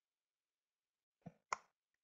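Near silence, broken by two faint short clicks about a second and a half in.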